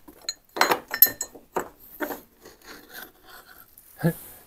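A stick prodding through rubbish in a waste container: a run of short, irregular knocks and clinks, the loudest about a second in with a brief ringing note as porcelain is struck, then softer scraping and rustling of bags and packaging.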